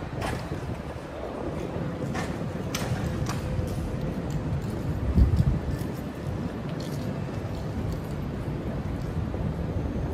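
City street noise: a steady low rumble of traffic with wind buffeting the microphone, a few faint clicks, and a louder low gust of wind about five seconds in.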